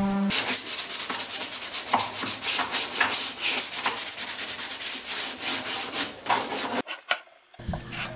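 Sanding sponge rubbed by hand over a wood cabinet's finished surface in quick, even back-and-forth strokes, a rapid scratching that scuffs the finish. It stops about a second before the end.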